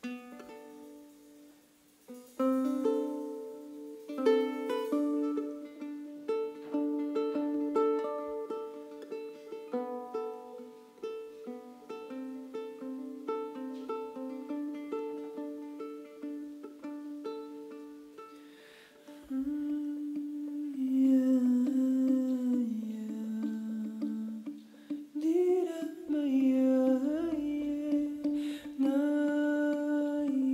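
A charango plays a melody of quick single plucked notes. About two-thirds of the way through, a wordless hummed vocal line joins in over the instruments, sliding between notes.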